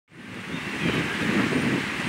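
Outdoor ambience of steady road traffic noise, a hiss with a low rumble, fading in at the very start.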